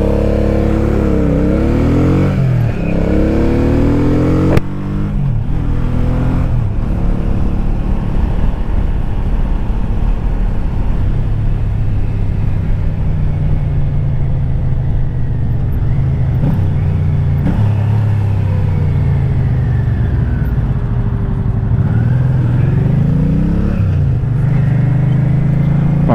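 V-twin cruiser motorcycle engine heard from the rider's seat, pulling away with its pitch rising and dropping through several gear changes in the first few seconds, then running steadily at road speed with gentler rises and falls.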